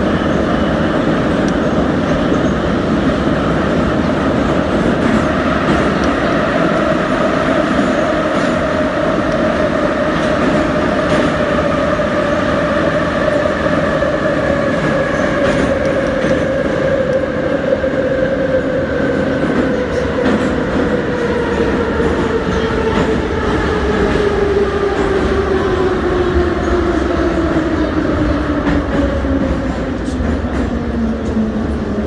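Metro train running through a tunnel, with the steady noise of wheels on rails and a motor whine that falls slowly in pitch, dropping faster in the second half as the train slows for a station.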